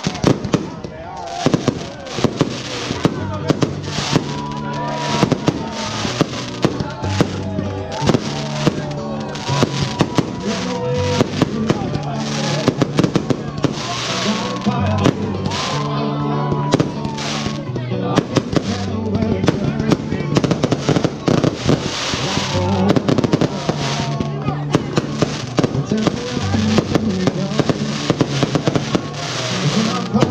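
Aerial fireworks display: a rapid, continuous barrage of shell bursts, bangs and crackle, several reports a second, over loud music with a steady bass line.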